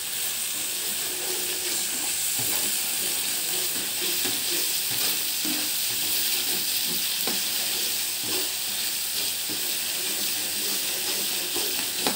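Blended spice paste with kaffir lime and bay leaves sizzling steadily in oil in a wok, with a metal spoon stirring and lightly scraping against the pan.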